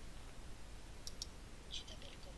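Two quick mouse-button clicks about a second in, pressing Audacity's Record button to start a recording, over faint background hiss. A short soft hiss follows near the end.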